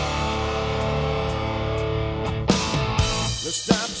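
Hard rock band playing without vocals: an electric guitar chord rings out for about two seconds over light cymbal ticks, then the drums hit and the guitar riff kicks back in.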